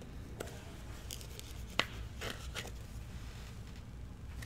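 Baseball trading cards being handled and a card slid into a clear plastic holder: faint scrapes and rustles of card stock against plastic, with one sharp click a little under two seconds in.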